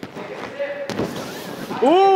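A single sharp thud about a second in as a person lands on a foam gym mat, his body hitting the padding, followed at the very end by a spectator's 'ooh'.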